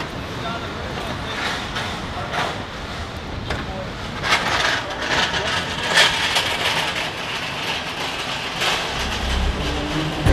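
Busy aircraft carrier hangar bay during stores loading: indistinct voices of sailors over a steady machinery rumble. Sharp clanks and rattles of pallets and a hand pallet jack come thickest in the middle.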